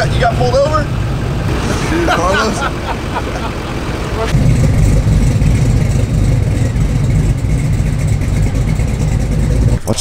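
A few indistinct voices in the first seconds, then a steady low drone of a truck's engine and road noise while driving on a street.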